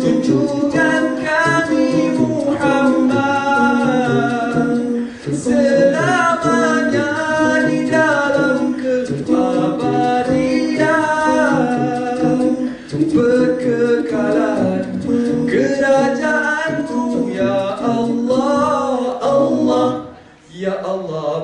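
Male a cappella vocal group singing a selawat, an Islamic devotional song, in harmony into microphones. The melody moves over a steady held low note, with brief breaks about five seconds in and near thirteen seconds.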